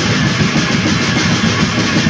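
Raw black metal: heavily distorted electric guitar and drums forming one dense, unbroken wall of noise.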